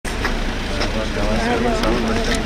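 Several people's voices chatting indistinctly over a steady low background noise.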